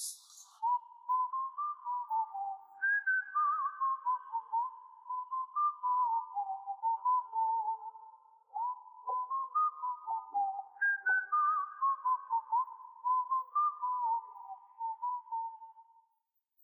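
Background music carried by a whistled tune: a single clear melody line stepping up and down through short notes with little slides between them.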